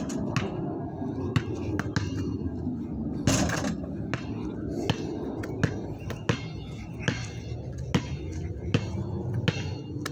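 A Spalding basketball bouncing on a concrete pad: a series of sharp thuds, roughly one every second, with a short rustling burst about three and a half seconds in.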